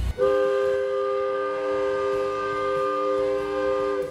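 A locomotive air horn sounding one long, steady chord of several notes as the train approaches a grade crossing.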